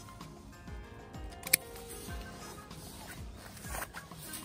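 Background music with a steady beat; about one and a half seconds in, a single sharp snip of hand pruners cutting through a woody hydrangea stem.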